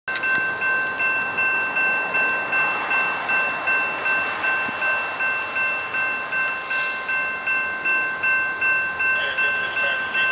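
Railroad grade-crossing warning bell ringing steadily, a clear metallic tone struck about two and a half times a second at an even level.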